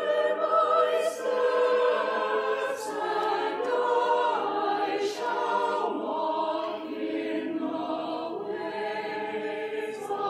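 A choir singing a hymn, in held, moving chords with sung words; a few 's' sounds stand out.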